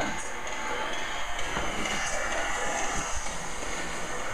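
Crowd cheering and applause heard through a television's speaker as the new year is rung in, a steady even noise.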